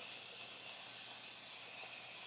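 A makeup setting spray misting onto the face in one long, steady hiss, which takes away a powdery finish.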